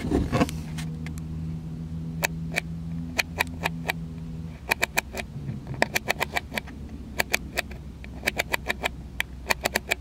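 Canon EOS Rebel SL2's control dial clicking detent by detent as it is turned, heard through the camera's own built-in microphone: single clicks at first, then quick runs of several, over a steady low hum from the car. A short rub of hands gripping the camera comes right at the start.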